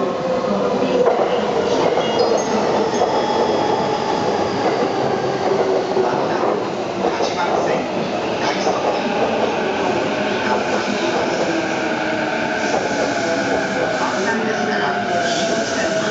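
JR East E233-series electric commuter train running into the station past the camera: steady wheel and rail noise from the passing cars, with a slowly falling whine in the last few seconds as it slows to stop.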